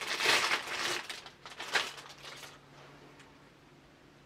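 Clear plastic bag around a mini tripod crinkling as it is handled and pulled open, in a few crackly bursts over the first two and a half seconds.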